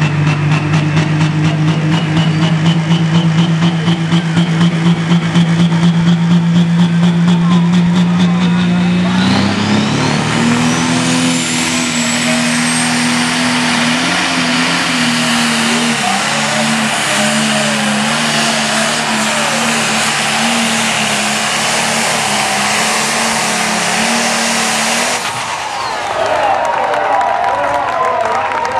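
Turbocharged diesel engine of a John Deere pro stock pulling tractor held at high revs while staging, with a whine climbing steadily. About nine seconds in it launches and pulls the weight sled under full load, the engine note stepping up with a heavy rush of noise and a rising whistle, until the throttle is cut about three seconds before the end.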